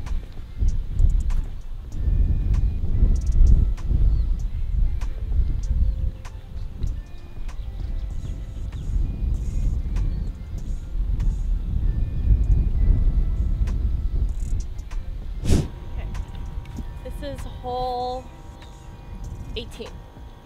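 Wind buffeting the microphone in uneven gusts, a deep rumble that eases off after about fifteen seconds, with faint background music under it. A single sharp click comes about fifteen seconds in, and a short pitched call sounds near the end.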